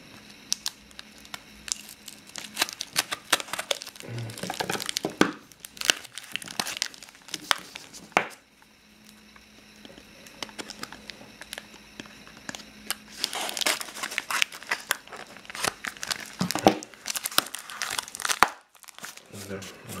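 Packing tape being peeled and a taped cardboard mailer being torn open and crinkled by hand, in bursts of crackling and ripping, with a quieter stretch from about eight to thirteen seconds in.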